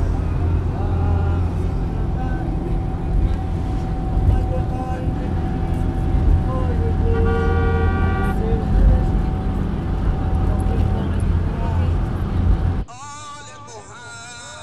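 City road traffic heard from inside a moving vehicle: a loud, steady engine and road rumble with car horns, one horn blaring for about a second midway. Near the end it cuts abruptly to quieter singing.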